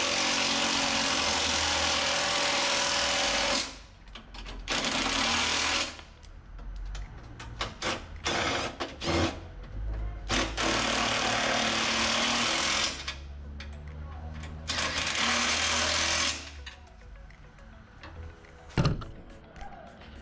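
Cordless impact driver with a deep socket running down the snowblower's handle bolts in four bursts of one to four seconds each, with quieter handling between them.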